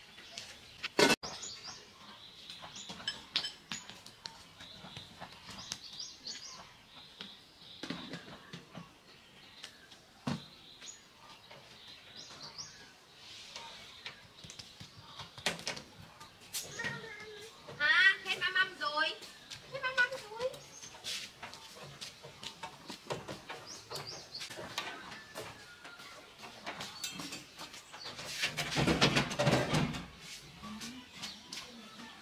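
Handling clatter outdoors: a sharp knock early on as a plastic cooler lid is handled, then scattered knocks, with birds chirping and a small child's voice in the middle. Near the end comes a louder spell of rattling and scraping as a round metal folding table is moved and set down on concrete.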